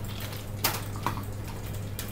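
A few sharp clicks of computer keys, the loudest about half a second in and a weaker one about a second in, over a steady low hum.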